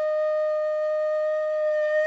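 Intro music: a flute holding one long, steady note.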